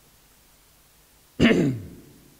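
A man clearing his throat once, a short rough sound with falling pitch, about a second and a half in.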